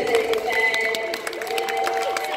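A group of children clapping, with many quick claps and held voices over the applause.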